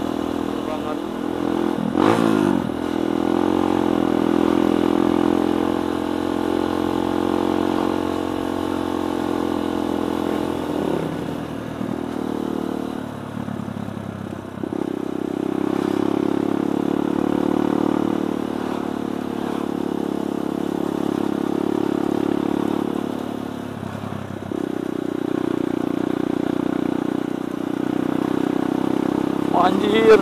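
Kawasaki D-Tracker 150 SE's carburetted single-cylinder four-stroke engine running under way, heard from the bike. The engine note dips and picks up again a few times: about two seconds in, around the middle, and near the end.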